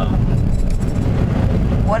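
Low, steady wind buffeting and road rumble inside the cabin of a moving car with the windows open.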